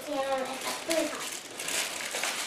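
Brief household speech in a high voice, two short utterances, with light rustling in the second half.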